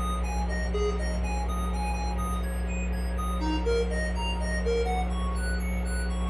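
Live electronic music from a synthesizer: a steady low drone under short bleeps that jump about at random pitches, several each second.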